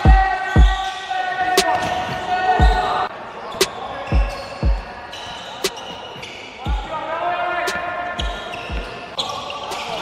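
A basketball being dribbled on a sports-hall floor: about a dozen irregular bounces, each a low thump with a short echo in the hall, along with sharp clicks from play on the court.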